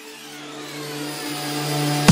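Electronic music build-up in a future funk track. A swept synth riser with crossing pitch glides swells steadily in loudness over held synth notes.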